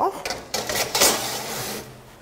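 A metal baking tray being slid along an oven's metal side runners: scraping with knocks about half a second in and a louder one about a second in as it goes home.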